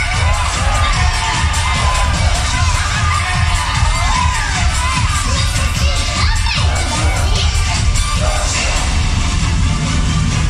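A theatre audience full of children shouting and cheering over loud show music with a steady, pounding low beat.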